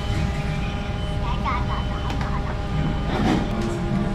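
Steady low rumble of room noise, with thin steady hums above it and a few brief snatches of voice, one about a second in, one near two seconds and one about three seconds in.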